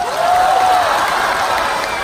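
Theatre audience applauding, clapping as a vote for contestant number one, with one held, pitched call rising over the clapping in the first second.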